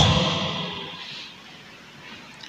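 A man's shouted word over a microphone and PA echoing in a large church, the reverberation dying away over about a second and leaving faint room noise.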